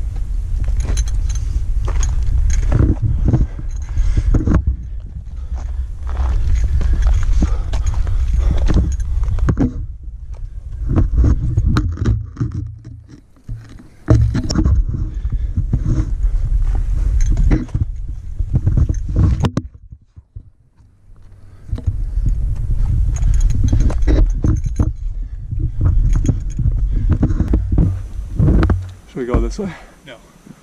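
Wind rumbling on a body-worn action camera's microphone, dropping out about a third of the way in and again about two-thirds in. Over it come frequent clicks, rattles and scrapes from backpack gear and hands on rock during a scramble.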